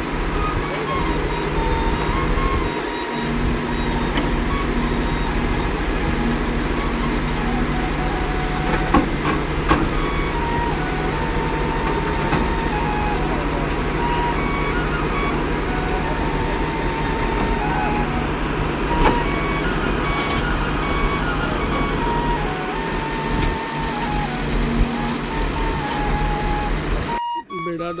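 Diesel engine of a Doosan wheeled excavator running steadily, with voices of onlookers over it. The sound cuts off abruptly about a second before the end.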